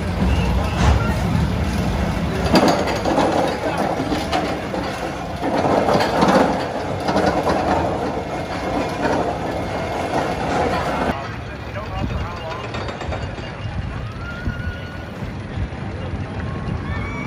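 Steel roller coaster train climbing a chain lift hill: a steady mechanical rumble with a rapid run of clicks and clacks from the lift chain and anti-rollback, with people's voices. About eleven seconds in it gives way abruptly to a quieter, more distant coaster background.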